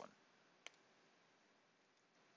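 Near silence: faint room tone with a single short, faint click about two-thirds of a second in.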